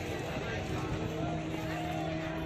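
Crowd chatter, many voices at once, with a steady engine hum coming in about half a second in.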